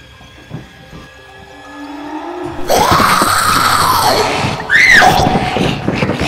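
Horror-film soundtrack: quiet, sparse music swells suddenly after about two and a half seconds into a loud, harsh scream whose pitch rises and then falls. A shorter, higher-pitched shriek follows near the end.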